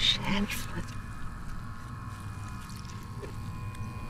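A short vocal fragment at the start, then a low steady electrical-sounding hum with a thin steady high tone over it.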